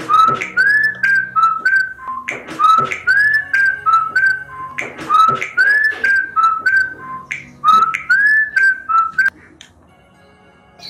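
Mobile phone ringtone: a whistled tune over a light ticking beat, the same short phrase repeating about every two and a half seconds, four times. It cuts off near the end as the call is answered.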